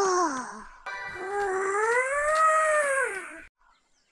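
A cartoon boy's voice in two long drawn-out cries. The first trails off about half a second in, and the second swells up in pitch and falls away, ending about three and a half seconds in.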